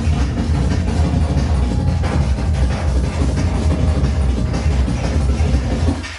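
Loud electronic breakcore music played live from a laptop over a club sound system, with dense, continuous beats and very heavy bass.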